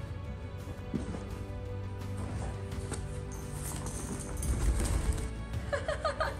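Background music playing, over which a heavy draft-cross horse shifts in deep arena sand. About four and a half seconds in comes a low, heavy thud with scuffing as it flops down flat onto its side.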